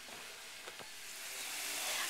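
Ground pork sausage sizzling as it browns in a frying pan, faint at first and growing steadily louder; two faint knocks a little under a second in.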